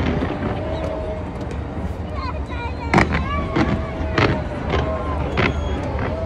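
Large fireworks display going off: a series of sharp bangs, the loudest about three seconds in and the rest coming about every half second after it, over a steady low rumble, with crowd voices mixed in.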